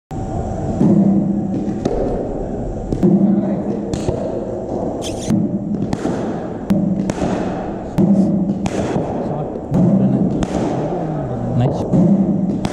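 Cricket bat striking the ball during net practice: a string of sharp knocks, roughly one a second, with balls thudding into the nets and onto the turf.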